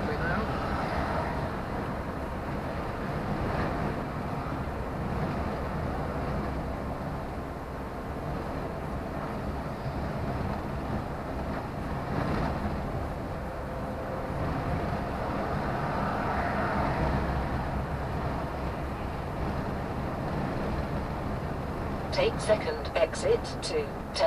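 Steady engine and road rumble inside a delivery truck's cab while driving, swelling and easing a little as it goes. A short sat-nav voice prompt comes in near the end.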